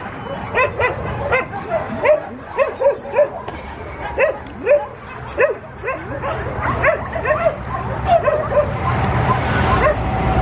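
Dogs whining and yipping in short rising-and-falling calls, about two a second, as they crowd and jump up at a person in greeting.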